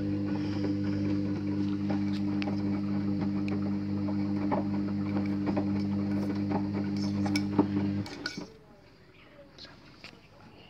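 Hoover front-loading washing machine's drum motor humming steadily as the drum turns the wet, sudsy wash on a cotton 60 °C cycle, with light knocks and sloshing. The hum cuts off suddenly about eight seconds in.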